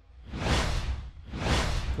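Two whoosh sound effects accompanying a TV transition graphic, each swelling up and fading away, the second about a second after the first, over a low rumble.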